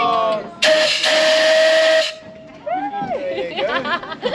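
Steam launch's whistle blown once for about a second and a half: one steady tone over a rush of steam hiss, starting about half a second in and cutting off sharply.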